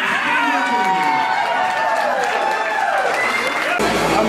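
A group of people shouting and cheering together, several voices overlapping in drawn-out, falling calls, cheering a lifter on during a barbell lift.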